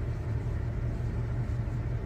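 A steady low rumble with a faint hum underneath, and no distinct event.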